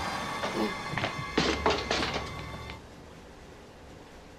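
Film soundtrack: music with sustained high tones, over a low rumble in the middle that fits a car driving past. The sound drops away after about three seconds.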